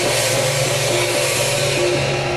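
Temple procession music: brass cymbals and drums played loudly over a melody that moves in short steps.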